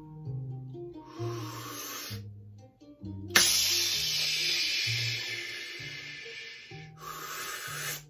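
A person breathing in deeply, close to the microphone: a short breath about a second in, then a long drawn inhale of over three seconds starting with a sharp onset, then another short breath near the end. Soft background music with low sustained notes that change pitch step by step plays underneath.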